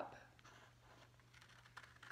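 Near silence: faint rustle of construction paper as scissors are slid up to the end of the cut, with a few faint clicks near the end.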